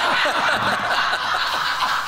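Men laughing together, a quick run of overlapping "ha" syllables, each falling in pitch.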